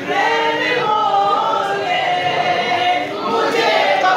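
A group of men's voices chanting a devotional song together, with long held notes that slide from one pitch to the next.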